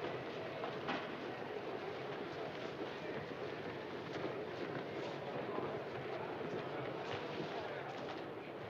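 Crowd ambience of a busy railway-station concourse: many people talking indistinctly, with scattered footsteps and heel clicks.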